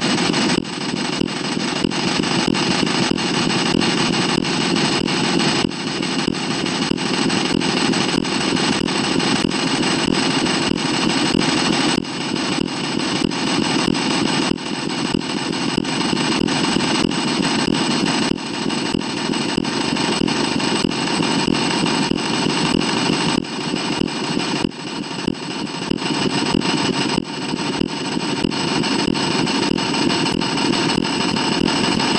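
Harsh, dense digital noise with a steady high-pitched whine. It is a cartoon clip's soundtrack wrecked by hundreds of repeated re-exports, so no voice or music can be made out.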